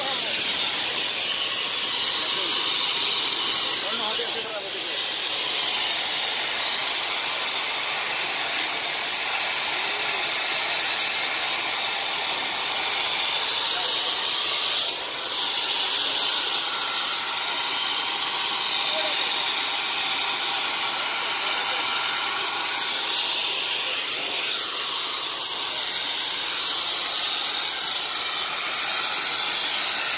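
A steady high-pitched hiss with faint voices underneath. It dips briefly about four seconds in, again around fifteen seconds, and once more near twenty-five seconds.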